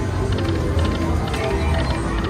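Whales of Cash video slot machine spinning its reels: short electronic tones and a few clicks as the reels spin and come to a stop, over a steady low casino background.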